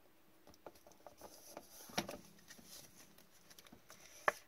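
Faint plastic rustling and small clicks of a trading card being handled and slipped into a soft sleeve and a rigid plastic toploader by gloved hands, with one sharper click about halfway through.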